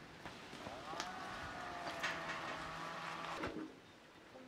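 A farm animal's single long call, lasting about three seconds and starting under a second in. A couple of knife cuts on a wooden cutting board sound over it.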